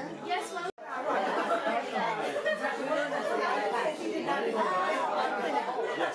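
Background chatter of several people talking at once in a room, no single voice standing out. A brief dropout cuts the sound under a second in.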